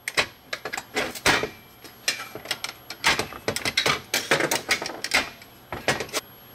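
Screwdriver prying a cartridge fuse out of the spring clips of a fusible disconnect: irregular metal clicks and scrapes.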